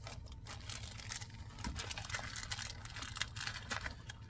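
Small plastic packets crinkling and rustling as they are handled, with irregular light clicks and taps throughout.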